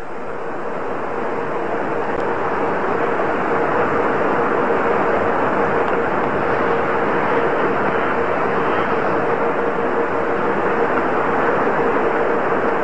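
An audience applauding steadily, building over the first few seconds, with a thin steady tone underneath.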